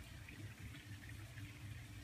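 Quiet background: a faint, steady low hum and hiss, with no distinct event.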